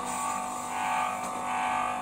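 Small low-cost centrifugal coolant pump motor running: a steady, noisy hum and whine held at one pitch.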